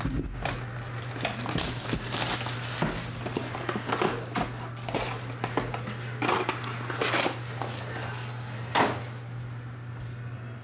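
Plastic wrap crinkling and tearing as a sealed trading-card hobby box is unwrapped and handled, with irregular rustles and cardboard clicks, the loudest near the end, over a steady low hum.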